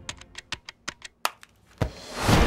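A quick, uneven run of sharp clicks like keys being typed, about eight in a second and a half, followed by a louder knock near the end.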